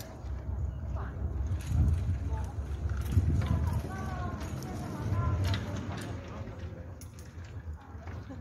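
Indistinct voices of people talking in the background, over an uneven low rumbling noise.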